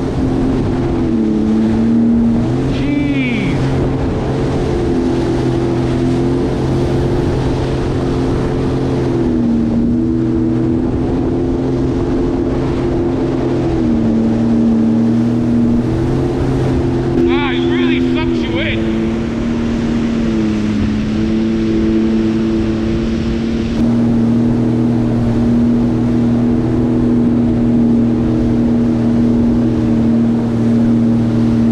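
A Sea-Doo GTX 170 personal watercraft's three-cylinder Rotax engine runs under way on the water, its pitch stepping down and back up several times as the throttle is eased and reopened. Under it is a steady rush of water and wind.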